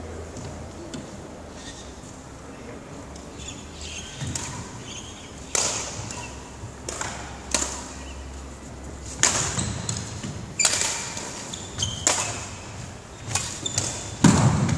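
Badminton rackets striking a shuttlecock in a rally: about six sharp cracks from about five seconds in, each more than a second apart, with a short ring of the hall after each. Footwork on the wooden court floor runs between the hits.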